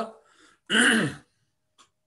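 A person clears their throat once with a short voiced cough, about two-thirds of a second in.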